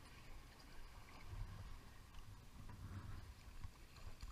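Faint ambience on the deck of a fishing boat at sea: a steady low rumble with a light hiss above it, swelling slightly a couple of times.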